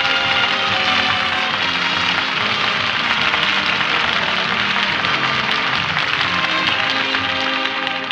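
Orchestral opening theme music of a radio comedy show, full and loud, dropping in level at the very end as the narration comes in.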